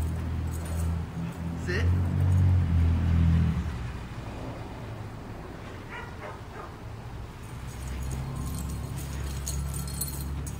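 A dog calls out briefly twice, about two seconds in and again about six seconds in. Under it is a low rumble that stops about three and a half seconds in and comes back near the end.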